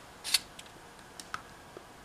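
A short rustling scrape about a third of a second in, then a few faint clicks, as a hand takes a piece of baked pumpkin off a foil-lined baking pan.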